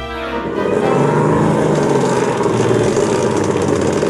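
A small car's engine running steadily, a rough, rattly drone that starts about half a second in.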